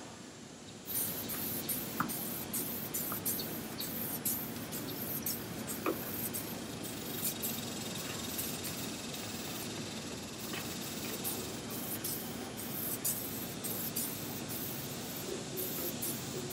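Aerosol can of adhesion promoter spraying in short, repeated bursts over a steady hiss, starting about a second in.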